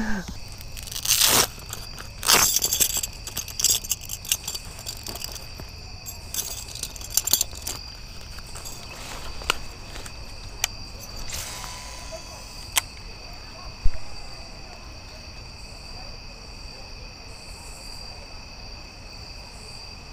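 A steady, high-pitched chorus of evening insects, crickets or katydids, under short rustles and sharp clicks from fishing tackle being cast and reeled.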